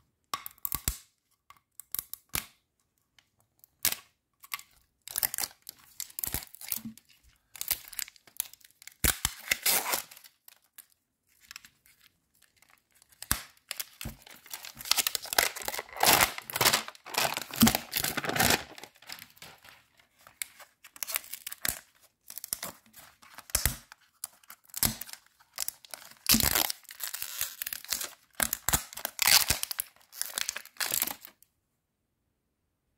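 The wrapper of an L.O.L. Surprise Mini Sweets toy package being torn and peeled open by hand, with crinkling and rustling in irregular bursts. There is a long busy stretch of tearing about halfway through and another near the end.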